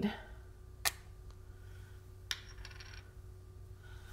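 Two sharp clicks about a second and a half apart, with a brief faint rattle after the second, as a Cricut knife blade housing is picked up and handled, over a faint steady hum.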